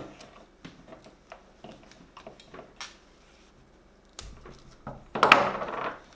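Small clicks and taps from a multi-tool set down on a wooden table and electrical tape being handled on a rope end, with a low thump about four seconds in and a short, louder rustle just after five seconds.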